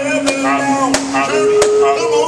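Male a cappella gospel group holding sustained harmony notes, which change about halfway through, over sharp hand claps about three a second.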